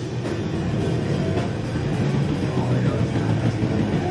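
Death/thrash metal band playing live: distorted electric guitars, bass and drum kit in a loud, dense, continuous passage with heavy low end.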